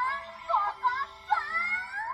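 A high-pitched female anime voice chanting a sing-song catchphrase, "Tan, Taka-tan!", in short gliding phrases over background music.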